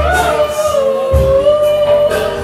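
Live R&B singing in a nightclub: one long sung note, bending slightly in pitch, over loud club backing music. The heavy bass drops out briefly and comes back in about a second in.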